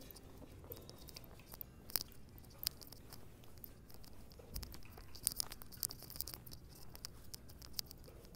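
Irregular crackles, clicks and rustles of a phone being handled and brushing against clothing, over a faint low rumble.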